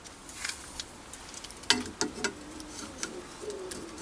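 Sharp clicks and light metallic knocks of the brass-knobbed brake lever being handled at the Myford ML7 lathe's spindle disc brake, the loudest clustered about halfway through. A low wavering tone sounds beneath them.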